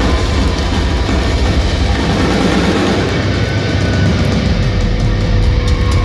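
A live heavy metal band playing loud: distorted electric guitars, bass and drums, continuous and dense with a heavy low end.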